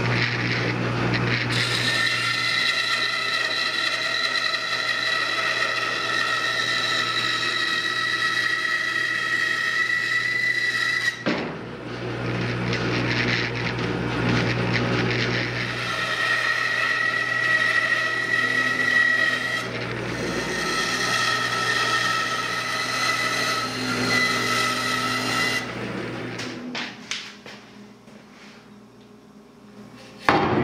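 Band saw cutting through a redwood 4x4 post: a steady motor hum under a whine from the blade in the wood. The sound dips briefly about eleven seconds in, then the cutting goes on, and it fades near the end.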